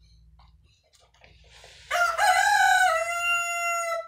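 A rooster crowing once: a single loud call of about two seconds starting halfway in, rising in pitch and then held steady.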